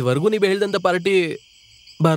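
A man's voice speaks briefly over crickets chirring. The voice stops a little over halfway through.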